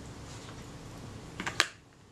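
A few sharp metallic clicks about one and a half seconds in, the last the loudest, as a pair of steel tweezers is picked up off the workbench.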